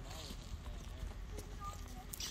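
Footsteps on a dry dirt slope: irregular soft crunching steps over a low steady rumble, with faint voices in the background.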